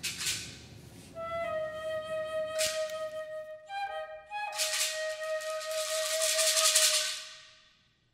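Flute music: a flute holds long notes with a few brief note changes, over swells of shaker rattle. It fades out in the last second.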